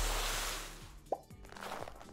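End-card sound effects over quiet background music: a noisy whoosh that fades away over the first second, then a short rising bloop about a second in.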